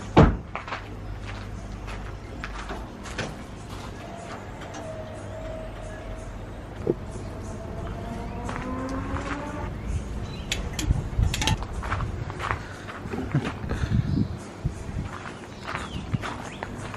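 Clicks and knocks of a green one-pound propane canister being handled and screwed onto a two-burner camp stove, clustered in the last third, with a knock at the very start. Under them is a faint steady low hum, and a faint whine rises and falls in the middle.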